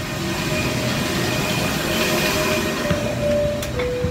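Steady rushing air and hum of an airliner's cabin ventilation while boarding, with a thin steady tone that steps lower near the end.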